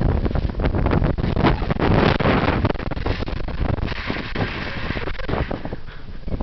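Wind buffeting the microphone in a steady rumbling gust, with scattered knocks and rattles throughout and a hissier stretch about four seconds in.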